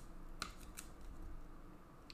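Faint rubbing of a trading card in a clear plastic holder being handled, with a few light clicks about half a second and a second in.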